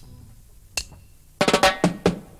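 Drum kit in a reggae rhythm track: a single sharp click, then a quick snare-drum fill of rapid strikes about a second and a half in, the lead-in to the rhythm.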